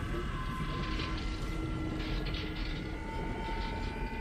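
Sci-fi film sound effect of the Tesseract's energy beam opening a portal: a steady low rumble under sustained humming tones that shift partway through.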